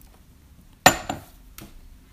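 Glass tea pitcher set down on a wooden tea tray: one sharp knock just under a second in with a brief glassy ring, followed by a couple of lighter knocks.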